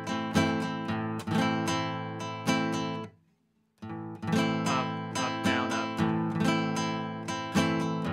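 Nylon-string classical guitar strummed in a rhythmic pattern, a root note followed by chord strums. Two phrases of strumming, broken by a short silence about three seconds in.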